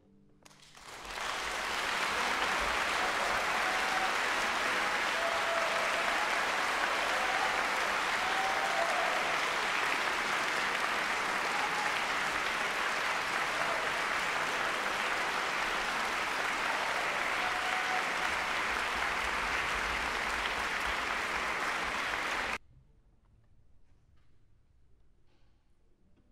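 Concert hall audience applauding: it swells up within the first second or two, holds steady, then cuts off suddenly near the end.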